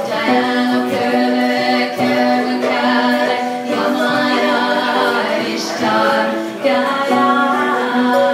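A woman singing a cappella, in long held notes.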